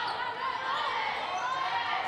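Steady ambient sound of a college basketball game in a gymnasium: a low murmur from the crowd and the sounds of play on the court, with no sharp impacts standing out.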